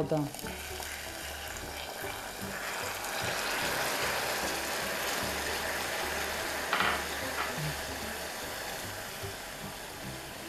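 Hot melted caramel sizzling in a saucepan as warm water is poured in and meets it with a thermal shock. It is a steady hiss that swells over the first few seconds and then slowly eases while it is stirred with a spatula.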